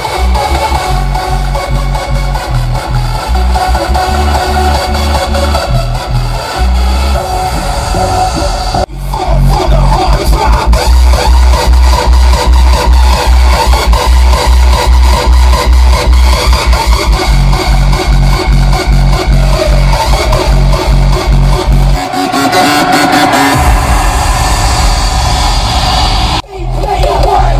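Loud electronic dance music with very heavy bass, played through a car stereo with a Ground Zero GZHW 30X 12-inch subwoofer and heard inside the car's cabin. After a short break about nine seconds in, the bass comes in rapid pulses, and near the end it drops out for a couple of seconds before coming back.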